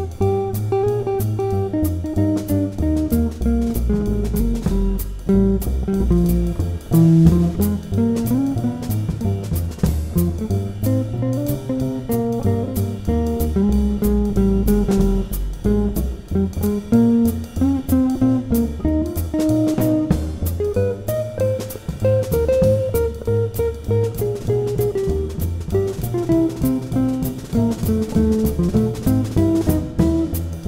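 Instrumental jazz trio: an archtop electric guitar plays a single-note solo line over plucked double bass and a drum kit keeping time on cymbals, with no singing.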